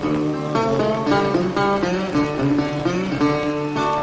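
Metal-bodied resonator guitar played solo as a blues instrumental break: a run of plucked notes over a repeating bass, with some notes bent in pitch.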